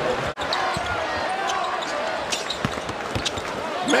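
Arena crowd noise with a basketball bouncing on the court floor in scattered thuds. The sound drops out sharply for an instant about a third of a second in, at an edit cut.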